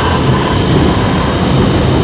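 Steady low rumble of road and engine noise inside a moving vehicle's cabin.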